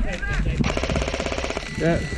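G&G MG42 electric airsoft machine gun firing one rapid burst of about a second, starting under a second in: a fast, even rattle of shots.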